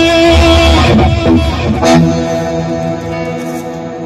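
Electric guitar played live with a deep low end under it. A last chord is struck about two seconds in and left to ring out, fading.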